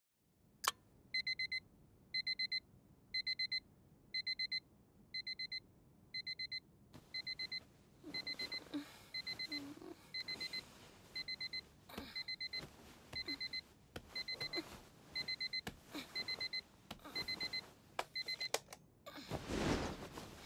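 Alarm clock beeping in quick groups of four, about one group a second, after a single click at the start. From about seven seconds in the beeps sound fainter, with scattered knocks and rustling among them. Near the end a loud rustle of bedding covers them.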